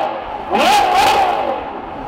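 Ferrari V12 revved hard while standing, rising quickly about half a second in, holding near the top briefly and then falling back. This is the tail of one blip followed by a second full rev.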